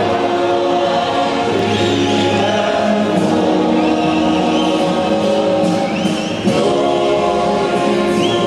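A national anthem with many voices singing together over music.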